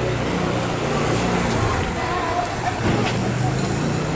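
Steady street noise with indistinct voices in the background.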